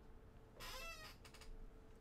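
A pet gives one short, faint, high-pitched call about half a second in. It could be a cat's meow or a dog's whine. A few faint clicks follow.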